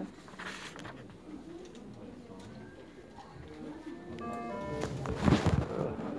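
Low murmur of a room with a short electronic tone, a few stepped notes, about four seconds in, then a loud rustle and thump of the phone being handled near the end.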